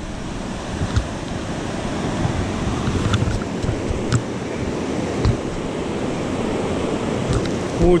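Whitewater river rapids rushing steadily, with a few faint knocks.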